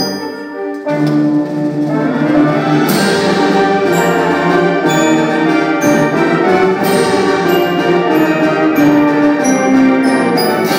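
High school concert band playing, with the brass section (trumpets and trombones) leading; the full band comes in loud about a second in and holds sustained chords.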